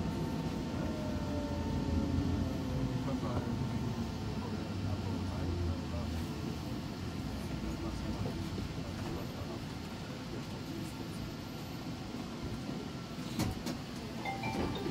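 Alstom Citadis Spirit light rail vehicle braking into an underground station: a steady low running rumble, with a motor whine that falls in pitch over the first few seconds, fading as the train slows to a stop. A couple of sharp clicks come near the end.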